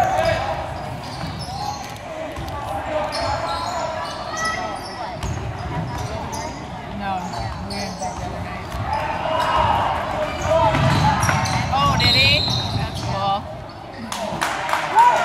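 Basketball game in a gym: sneakers squeaking on the hardwood, the ball dribbling, and crowd chatter that grows louder about nine seconds in.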